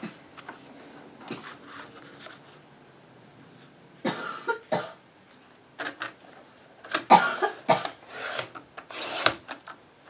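Sliding paper trimmer cutting through two layered sheets of craft paper: the blade carriage rasps along its rail in short bursts during the second half, the longest run a little after the midpoint.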